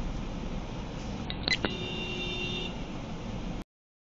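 Steady street-traffic rumble picked up by a car's dashcam, with a couple of sharp clicks about a second and a half in, followed by a steady beep lasting about a second. The sound cuts off abruptly near the end.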